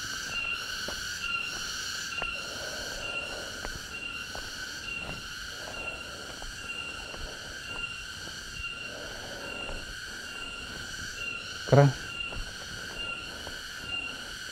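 Insects chirping in a steady, high-pitched chorus that pulses about twice a second, with a few faint footsteps on a paved path.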